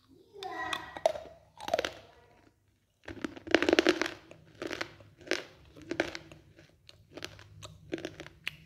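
Close-miked crunching of a soaked earthen piece being bitten and chewed in the mouth, earthen-pica eating. Wet mouth sounds in the first two seconds, then from about three seconds in a run of sharp crunching chews a few times a second.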